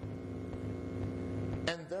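Steady low electrical mains hum in the recording during a pause in a man's speech, with his voice starting again near the end.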